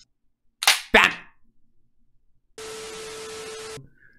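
A slingshot shot: two sharp cracks about a quarter of a second apart, the release and the hit on a broken television set. Near the end comes about a second of steady hiss with a low hum through it.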